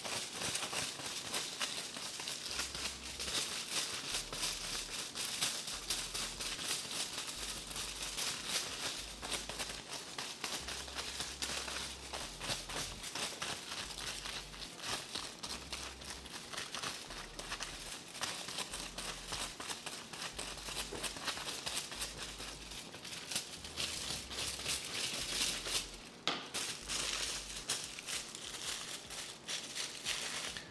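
Aluminium foil crinkling and rustling as a tint brush and hands work bleach into a strand of hair laid on the foil: a steady stream of small crackles.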